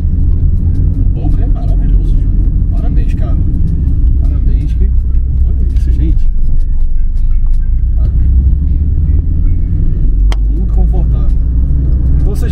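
Steady low rumble of engine and road noise inside the cabin of a moving Peugeot 806 minivan with a 2.0 turbo engine, with faint voices under it. There is a single sharp click about ten seconds in.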